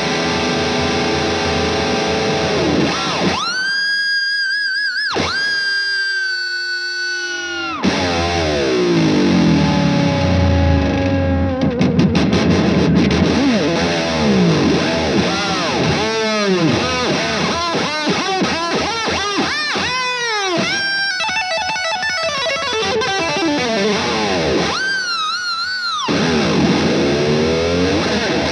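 Distorted electric guitar on a Jackson with a Floyd Rose double-locking tremolo, played with heavy whammy-bar work. Held high notes dive steeply down in pitch, and notes swoop up and down again and again.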